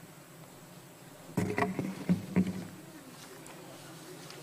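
A quick cluster of four or five knocks and bumps on a wooden lectern, picked up close by its microphone as a placard board is stood up on it, over a low steady hum.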